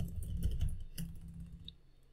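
Typing on a computer keyboard: a quick run of key clicks that thins out near the end.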